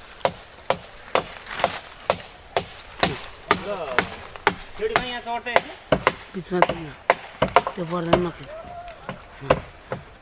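A tool striking wooden poles, heard as repeated sharp knocks about two a second at an uneven pace, as a pole platform up in a tree is built.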